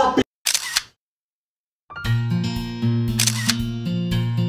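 Music cuts off abruptly, followed by a brief camera-shutter sound effect and a second of dead silence. Then new background music starts with a steady bass line, and a second shutter sound comes about three seconds in.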